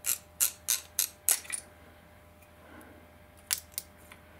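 Sharp clicks and taps from a metal Olight Baton 4 flashlight being unscrewed and its battery taken out. There are about six quick clicks in the first second and a half, then two more near the end.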